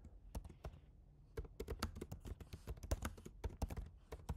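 Typing on a computer keyboard: a faint, quick run of keystrokes with a short pause about a second in.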